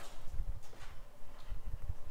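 Low, uneven thumps and faint rustling of handling and movement, with no clear single event.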